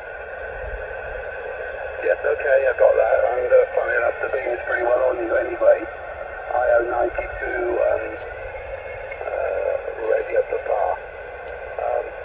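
A man's voice received over 2 m SSB radio from the Yaesu FT-817's speaker: thin, narrow-band speech over a steady bed of receiver hiss.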